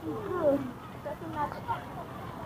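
Chatter of a crowd in an open plaza, with children's high voices calling out; the loudest, a falling shout, comes about half a second in.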